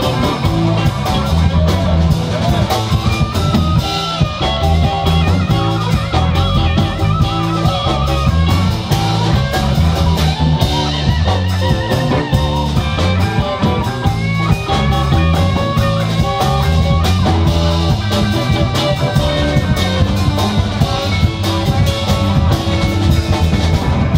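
Live blues band playing an instrumental break: electric guitars, electric bass and a drum kit, with a guitar playing lead lines that include wavering, vibrato-bent notes, over a steady beat.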